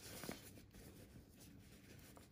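Near silence with faint rustling of cotton fabric as it is scrunched along a safety pin to work elastic through a sewn casing, with one small soft sound about a third of a second in.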